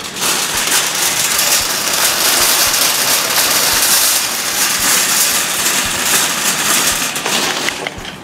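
Empty wire shopping cart pushed quickly over rough, cracked asphalt, its wheels and metal basket rattling continuously. The rattle eases off near the end.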